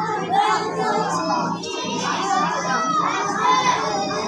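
Many children's voices at once, talking and calling out over one another in a continuous hubbub.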